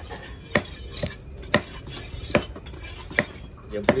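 A large knife chopping tuna flesh into cubes on a wooden chopping block: about six sharp chops, a little under one a second.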